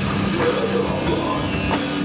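A hardcore/thrash metal band playing live: distorted electric guitars holding notes over fast, steady drum-kit beats, in a rough, low-fidelity live recording.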